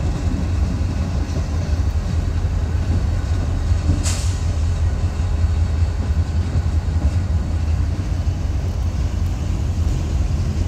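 Freight train rolling slowly through a rail yard: a locomotive and a string of freight cars making a steady low rumble. A short hiss comes about four seconds in.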